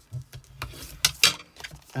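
Stiff coated cardstock being folded and pressed by hand along its score lines: paper rustles and a few sharp crackles, the loudest near the middle.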